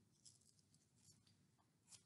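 Near silence, broken by three faint soft ticks of fingers handling and peeling the paper backing off a small foam heart sticker.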